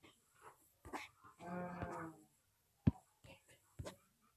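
A short held voiced sound of steady pitch, just under a second long, with a few sharp clicks after it.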